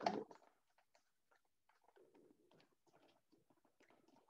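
Faint rustling and small clicks of a printed gift box and its packaging being handled and opened by hand.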